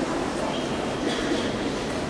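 Indistinct voices and a steady rumbling background noise in a large sports hall, with no distinct strikes or shouts.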